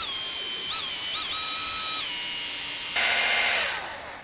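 Handheld power drill running a small bit into a broken steel exhaust stud in a motorcycle cylinder head, drilling a pilot hole. The motor whine holds steady, its pitch wavering briefly twice as the bit loads up, shifts again later, and stops near the end.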